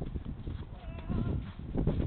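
Wind rumbling on an outdoor microphone, with a tennis racket striking the ball during a forehand rally.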